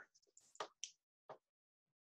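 Near silence, broken by three faint short clicks between about half a second and a second and a half in.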